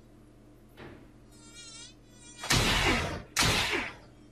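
Cartoon mosquito-buzz sound effect: a thin, wavering whine that comes and goes, then two loud rushes of noise close together near the end.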